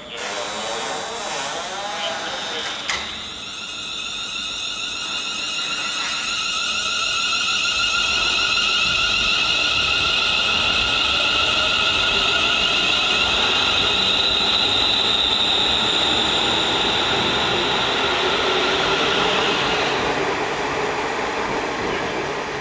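Class 350 Desiro electric multiple unit pulling away: its traction equipment gives the typical Desiro whine, several steady high tones at once, that grows louder as the train gathers speed and passes, with a low rumble of wheels beneath, and fades near the end. A single sharp click about three seconds in.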